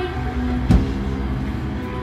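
Live band's amplified electric guitar notes ringing and held over a low, steady amplifier drone, with one sharp knock about three quarters of a second in.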